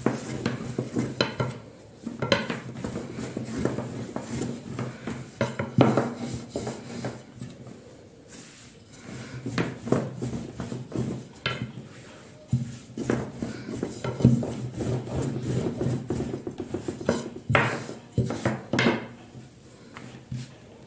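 A thin wooden rolling pin (oklava) rolling out a ball of dough on a floured countertop. It makes repeated rubbing rolling strokes in uneven spurts, with light knocks of wood on the counter.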